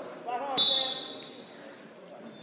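A thud on the wrestling mat, followed at once by a short, shrill whistle blast that fades over about a second. This is the referee's mat slap and whistle signalling the pin, with shouts just before.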